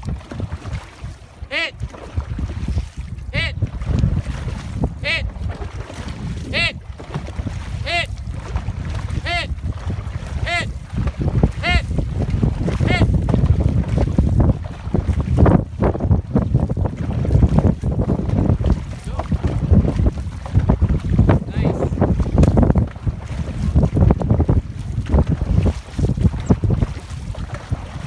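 A crew of dragon boat paddlers stroking through the water, heard as rhythmic surges, with wind buffeting the microphone. In the first half, before the paddling gets loud, a voice gives short shouted calls about every one and a half seconds, coming slightly faster each time, pacing the strokes.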